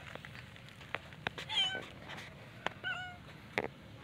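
A cat meowing twice, two short calls about a second and a half apart, with a few sharp clicks in between.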